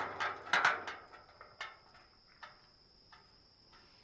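Rustling and scraping handling noise for about the first second, then a few light scattered clicks and taps, over a faint steady high-pitched tone.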